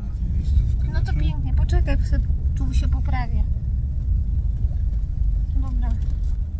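Low, steady rumble of a Toyota Hilux pickup camper on the move, heard from inside the cab, with faint voices over it in the first half.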